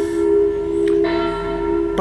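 Background music: a steady bell-like drone of several held tones, with a faint click about a second in.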